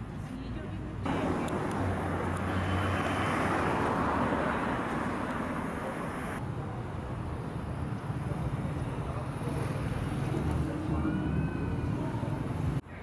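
Street traffic noise: a steady rush of passing vehicles that jumps louder about a second in and drops back abruptly around six seconds, with faint voices in the background.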